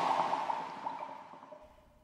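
An edited-in sound effect: a sudden sharp hit, then a ringing tail with a few short warbling tones that fades away over about two seconds.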